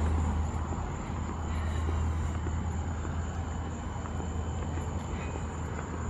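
Steady low rumble under an even outdoor background noise.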